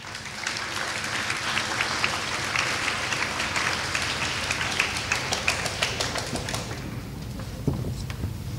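Audience applauding: the clapping builds in the first second, holds steady, and dies away about a second before the end.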